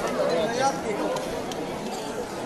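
Chatter of many young voices talking at once in a large hall, an indistinct crowd babble with no single clear speaker.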